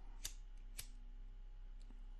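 Cigarette lighter being flicked: two sharp clicks about half a second apart, then a fainter click near the end, over a low steady hum.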